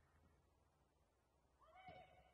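Near silence with a low room hum, and near the end one faint, short call whose pitch rises and falls, like a distant shout from the pitch.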